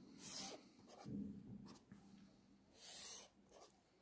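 Felt-tip marker drawing long straight lines on notebook paper: several separate, faint scratchy strokes of about half a second each.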